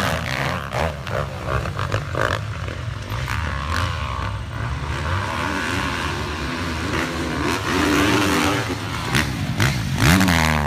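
Several motocross dirt bike engines running and revving on a dirt track, their pitch rising and falling with the throttle, with scattered sharp crackles.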